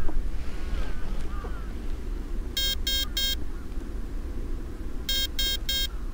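Electric RC helicopter speed controller in stick-programming mode, beeping through the motor: two groups of three short, high tones, one a few seconds in and one near the end, marking a numbered programming menu item. A steady low rumble runs underneath.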